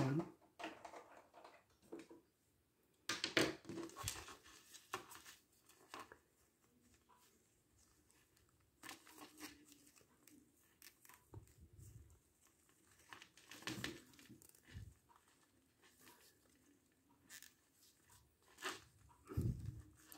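Handling noise from a small plastic action figure: faint, scattered rustles and light clicks as fingers work a tiny replacement hand onto the figure's wrist peg, with quiet pauses between.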